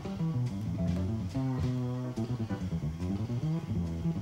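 Live jazz trio: a plucked upright double bass carries a walking, prominent bass line, with piano notes and light cymbal taps behind it.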